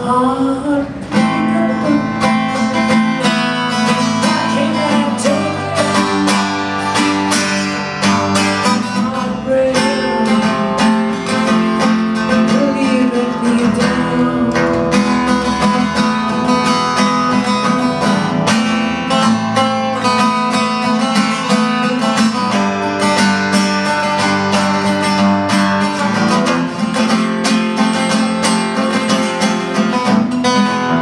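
Cutaway acoustic guitar played solo, strummed and picked in a steady rhythm of chords.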